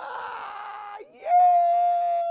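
A man laughing hard in a high-pitched voice: a raspy burst about a second long, then one long held high cry.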